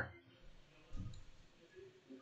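A few faint clicks from a stylus writing on a tablet screen, with a soft low thud about a second in.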